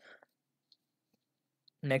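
A few faint, light clicks in near quiet, with a short soft rustle-like noise right at the start; a man's voice begins just before the end.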